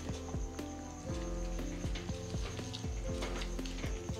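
Background music: held notes over a steady, thudding beat.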